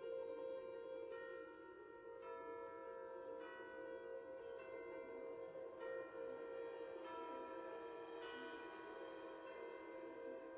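Quiet, slow wind-ensemble music: ringing, bell-like metallic notes enter one after another about once a second and sustain over a steady held low note.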